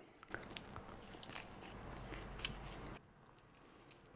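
A man biting and chewing a mouthful of moist banana bread, faint, with small soft mouth clicks; it cuts off about three seconds in.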